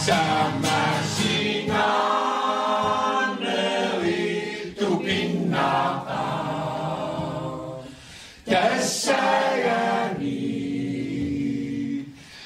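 Mixed choir of men and women singing together, with a short break between phrases about two-thirds of the way through.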